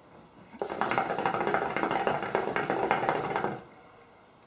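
Hookah water bubbling as a long pull of smoke is drawn through the hose. It is a dense, rapid gurgle that starts about half a second in and stops after about three seconds.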